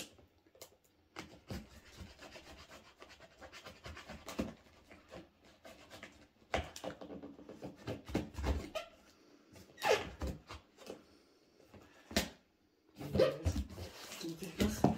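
Fingers scratching, picking and rubbing at packing tape on a cardboard box while trying to get it open: irregular scraping and small clicks, with a few louder scrapes around seven, ten and twelve seconds in.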